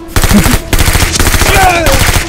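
Rapid automatic blaster fire: one long, dense burst of shots, many a second, starting just after the start. Near the end a man's cry falls in pitch over it.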